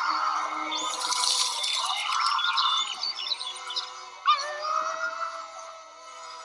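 Cartoon soundtrack of music and comic sound effects, with a girl character's scream held at the start. Near the end a sharp rising sweep leads into a long steady howl-like tone.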